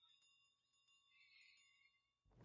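Near silence, with only a few very faint steady tones.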